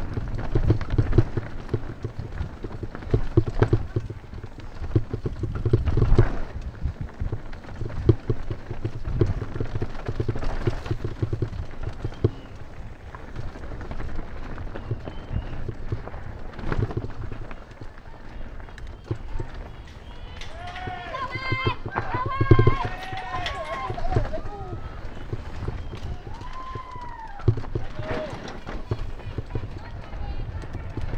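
Mountain bike rattling and clattering down a rocky, rooty trail, heard close up from an on-bike camera: tyre rumble, chain and frame rattle, and many short knocks as the wheels hit rocks. From about two thirds of the way through, voices shout and whoop several times in rising-and-falling calls.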